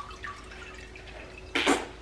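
Juice dripping and trickling into a glass bowl as a cheesecloth bag of blended ginger pulp is wrung out by hand. Near the end there is a short, loud burst of noise.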